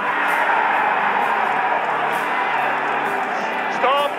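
A sudden loud outcry of many voices shouting at once, a crowd-like roar that holds steady: appeals for a foul after a player goes down in the penalty area. Background music runs underneath.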